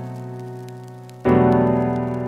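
Music: sustained keyboard chords with no vocals. One chord fades slowly, and a new chord is struck about a second in and begins to fade in turn.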